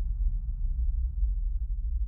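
Deep, steady low rumble of a cinematic sound-design drone under the closing title cards.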